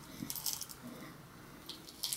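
Faint, brief rattles of small calcium metal pieces shaken in a small plastic bottle as it is opened and tipped toward a hand, once early and again near the end.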